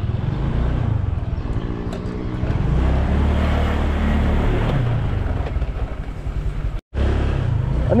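Honda motor scooter's small engine running as it is ridden slowly, mixed with wind and road noise; the rumble gets heavier as the scooter leaves the pavement for a rough dirt path. The sound breaks off abruptly for a moment near the end.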